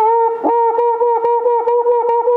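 Cuíca played by rubbing a wet cloth along the stick fixed inside its metal drum, giving a squeaky, voice-like tone at one steady pitch. One longer stroke opens, then rapid short strokes follow at about seven a second.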